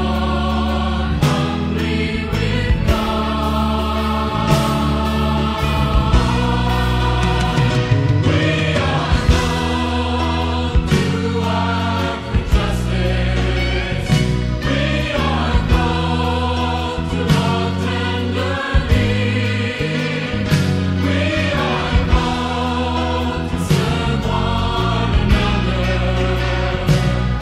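Background music: a choir singing a Christian hymn over instrumental backing with held bass notes and a steady beat.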